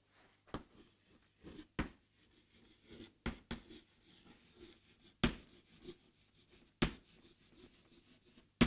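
Chalk writing on a chalkboard: faint, irregular taps and short scratches as the letters are formed, the sharpest a little past five seconds and near seven seconds in.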